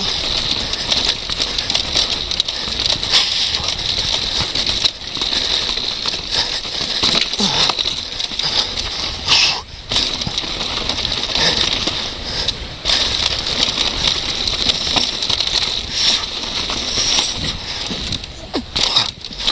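Downhill mountain bike descending a rough, stony dirt trail: constant wind rush on the microphone with continual clatter and rattling of tyres and frame over stones and bumps.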